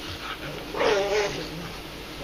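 Pug growling over his toy penguin as someone tries to take it away, guarding the toy. About a second in he lets out a louder, higher-pitched whining cry lasting half a second.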